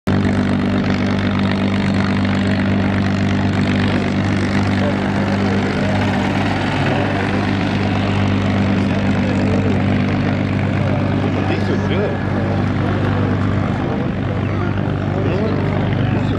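North American P-51D Mustang's Packard Merlin V-12 engine and propeller running at a low, steady idle as the fighter taxis, an even drone that eases a little after about twelve seconds. Voices can be heard faintly under it in the later part.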